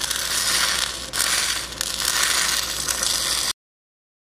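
Compressed-air flux recovery system of a submerged-arc welder running: a steady rushing hiss as the recovery nozzle, dragged behind the weld, sucks up loose granular flux. It cuts off suddenly about three and a half seconds in.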